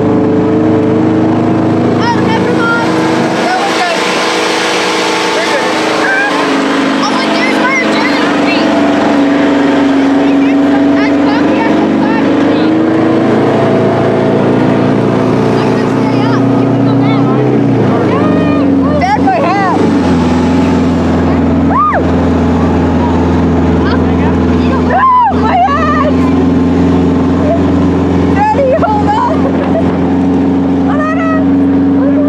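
A tank's engine running loud and steady as the tank drives. About eighteen seconds in, the engine note drops and settles lower, with short high squeals scattered over it.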